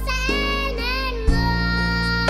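A young girl singing over accompanying music: a sung phrase that wavers in pitch, then a steady held note in the second half.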